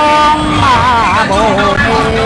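A voice singing a Mường folk song (hát Mường), holding long wavering notes that slide and bend with ornamented turns, over a steady background hum.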